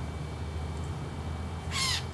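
An Australian magpie gives one short call near the end, falling in pitch, over a low steady background hum.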